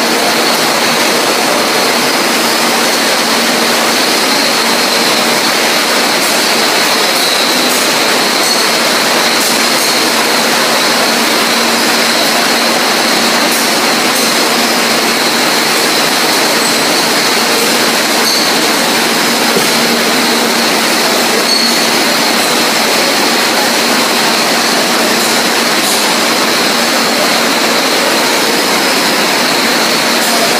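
Steady, loud machinery noise of a running bottling line: a Krones filler and conveyor moving glass bottles, a constant din with a faint steady high whine through it.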